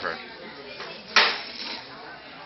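A single sharp clatter about a second in, like a hard object knocking on a table or dishes, dying away within half a second over low room noise.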